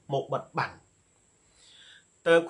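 A man speaking Khmer for about the first half-second, then a pause.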